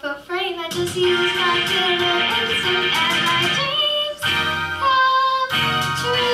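A girl singing into a microphone over instrumental backing music with guitar, wavering at the start and then holding sustained notes.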